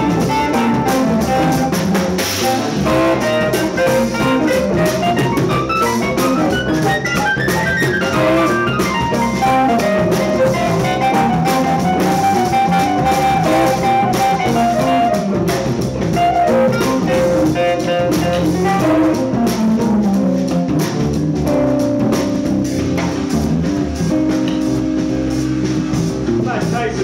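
A live band plays an instrumental passage: violin and guitar over drum kit, bass and keyboard. A melodic line climbs and falls in quick runs, then holds a long note in the middle, with steady drumming underneath.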